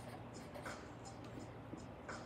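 Paintbrush strokes on an oil painter's palette and canvas: a quick run of short, scratchy strokes, about three a second.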